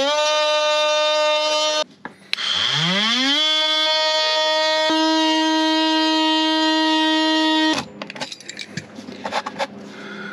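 Cordless Ryobi oscillating multi-tool cutting an opening in a wooden cabinet panel: a loud, steady, high whine that rises in pitch as the tool spins up, stops briefly about two seconds in, then rises again and holds until it cuts off near the end. Scraping and rubbing against the wood follow.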